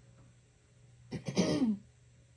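A woman coughs once, a short harsh cough about a second in, like clearing her throat.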